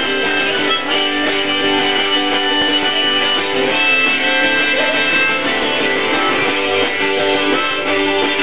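Two acoustic guitars strumming with a harmonica playing held notes over them: an instrumental passage of a live folk song.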